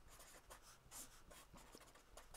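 Faint scratching of a marker pen writing on paper, in short strokes.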